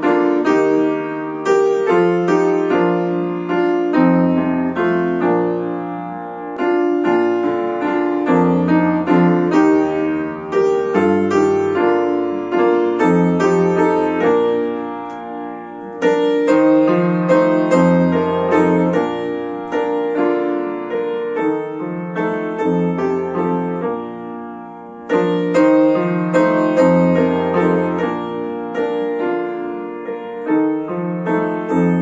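Upright piano playing a slow hymn in block chords with both hands, a steady bass under a chordal melody. Phrases die away and then start loud again, about halfway through and again near the end.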